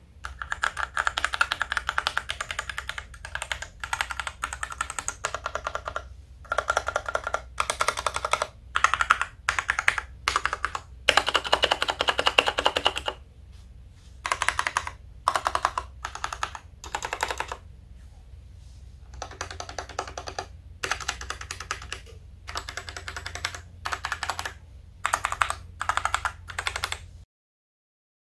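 Typing on a Royal Kludge RK100 96% mechanical keyboard fitted with RK Red linear switches, in bursts of rapid keystroke clicks with short pauses between them. The typing stops abruptly near the end.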